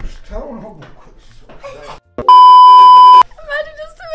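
A loud, steady, high electronic bleep lasting about a second, dubbed over the soundtrack after a sudden cut, of the kind used to censor a spoken word.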